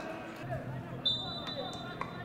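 A referee's whistle blown about a second in, one steady high blast, over players' shouts on the pitch and a couple of dull thuds.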